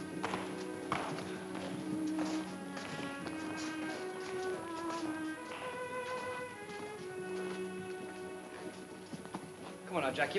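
Orchestral film score playing held, shifting notes over the clatter of several pairs of boots walking across a wooden floor. The footsteps are busiest in the first few seconds and thin out as the walkers leave.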